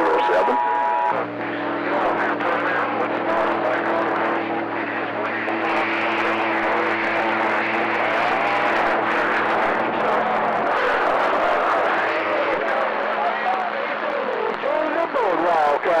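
CB radio receiver on channel 28 carrying skip: static and hiss with garbled, overlapping distant voices. A set of low steady tones, carriers beating against each other, comes in about a second in and drops out at around ten to twelve seconds.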